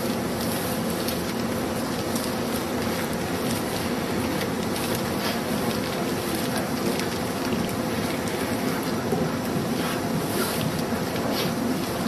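Steady hiss and low hum of continuous background noise, with a few faint light ticks.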